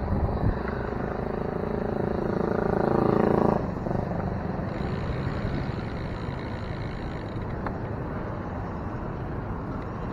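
Passing motor-vehicle traffic and wind on a bicycle-mounted microphone. A vehicle engine drones loudly for the first few seconds and cuts off sharply about three and a half seconds in, leaving a steady rush of wind and road noise.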